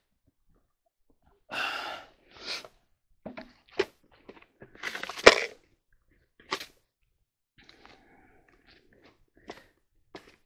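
Rustling, crinkling and scattered clicks of a new pair of work gloves being taken out of their packaging, with one sharp snap about five seconds in.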